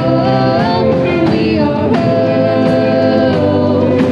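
A live rock band plays and sings: a lead singer and backing singers hold notes in harmony over keyboard, electric guitar, bass and drums, with regular cymbal hits.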